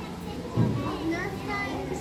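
Indistinct voices of people and children talking in the background, with a short low thump about half a second in.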